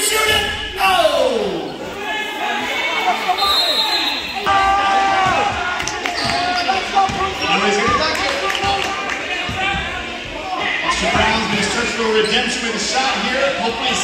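A basketball dribbled and bouncing on a hardwood gym floor during play, under spectators' voices and chatter in a large hall.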